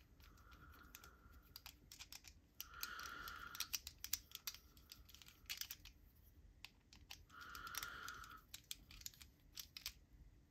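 Faint small clicks and scrapes from a small metal tool working at the snap fastener on a knife sheath's retention strap, with soft handling rustles every couple of seconds.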